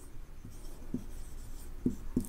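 Marker pen writing on a white board: faint scratching as letters are drawn, with a couple of short, light strokes about a second in and near the end.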